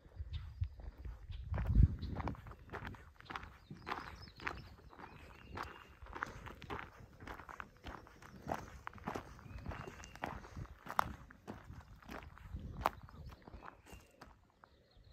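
Footsteps crunching on a gravel campsite pad at a steady walking pace, with a low thump about two seconds in.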